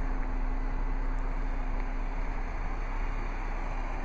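Steady low rumble and hiss of outdoor background noise, even throughout with no distinct events.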